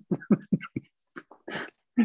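People laughing over a video call: a quick run of short chuckles in the first second, then a few softer, spaced-out ones.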